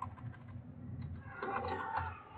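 Typing on a computer keyboard: a run of quiet keystrokes as a short command is deleted and retyped.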